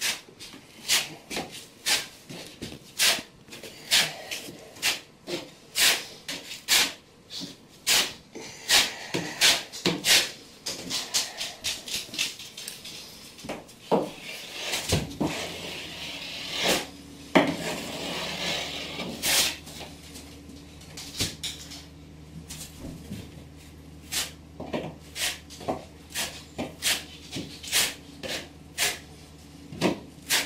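Metal trowel scraping and clicking as mortar is spread into a wall corner seam, with a sharp stroke every second or so. About halfway through, a low steady hum starts and carries on under the strokes.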